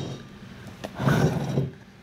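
A wooden resin-casting mold box handled on a wooden workbench: a light knock a little before a second in, then a short scraping rub of wood on wood as the box is moved.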